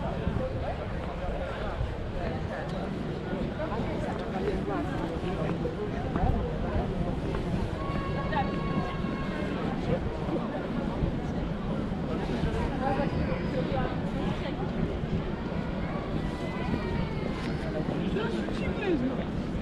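Open-air street ambience of a crowd of pedestrians: scattered indistinct voices of passers-by talking, a clearer voice about halfway through and again near the end, over a steady low rumble.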